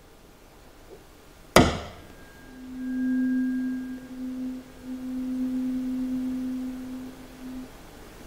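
Tuning fork struck once with a sharp knock about a second and a half in, then ringing a steady single tone that swells as it is brought to the microphone and stops a little before the end.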